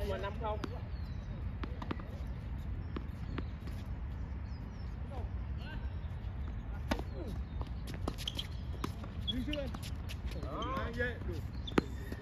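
Tennis balls struck by racquets and bouncing on a hard court during doubles play: sharp single pops spaced a second or more apart, over a steady low rumble.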